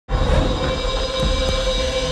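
Sound-design sting of a TV show's title sequence: a loud low rumble with steady ringing tones held over it, starting abruptly.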